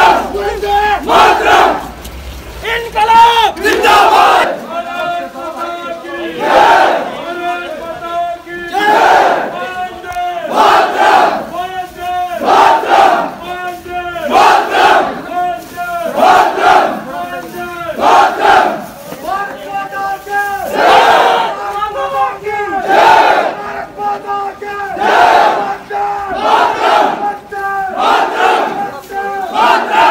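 A large crowd shouting slogans in call and response: a lead voice's shout is answered by the crowd shouting together, over and over about every two seconds.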